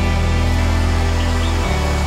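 Live worship band playing an instrumental passage: sustained low bass and chords, with the bass note changing about a second and a half in.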